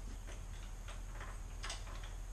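A few light clicks and taps, about four in two seconds with the loudest near the end, from hands working at a wooden tripod stand, over a steady low hum.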